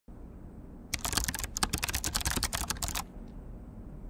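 A quick run of sharp clicks, about ten a second, starting about a second in and stopping about two seconds later.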